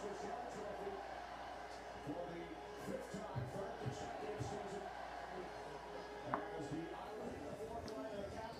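Indistinct, muffled voices murmuring in the background at a steady moderate level; no clear sound of the water being poured stands out.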